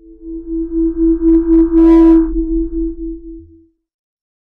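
Electronic logo sound effect: one strong held tone with a wavering level over a deep low hum, a brighter shimmer in the middle, swelling to its loudest about two seconds in and then fading out.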